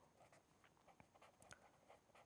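Near silence, with faint scratches and small taps of a pen writing on paper.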